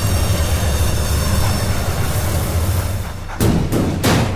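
Film background score: a steady low drone, then heavy drum hits begin near the end, two in quick succession.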